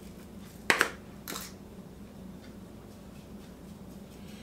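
Spice containers handled while seasoning a pork shoulder: one sharp click just under a second in, then a brief shake of seasoning half a second later, followed by faint small handling sounds.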